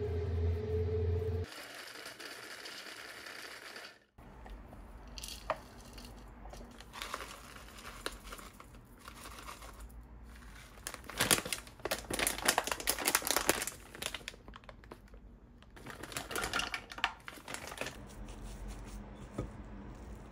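Silicone spatula stirring and scraping crumbly cookie dough with chopped pistachios in a glass mixing bowl, in irregular bursts of gritty rustling and scraping. A steady low hum fills the first second and a half.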